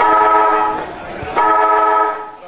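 Football ground siren (hooter) sounding two loud blasts of one steady pitch, the second about a second and a half after the first.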